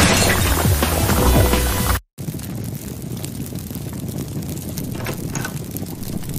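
Loud hissing spray from a cartoon dental mouthwash sprayer over background music, fading and then cutting off abruptly about two seconds in. A quieter steady noise follows.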